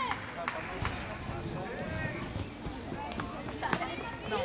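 Indistinct chatter of spectators' voices, with several sharp knocks scattered through.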